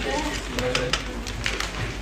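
Voices talking in a room, with scattered sharp clicks and a steady low mains-like hum underneath.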